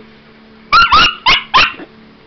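Small puppy yapping at a robotic toy pig: after a short quiet, four quick high-pitched barks in under a second, with a weaker one trailing after.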